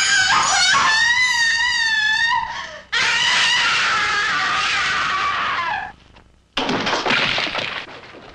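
A woman screaming: two long, wavering screams, the second ending in a falling tail. Near the end comes a sudden burst of noisy crashing sound.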